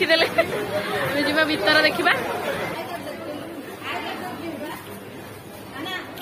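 People talking and chattering, loudest in the first couple of seconds, with a quieter stretch and another short bit of talk later on.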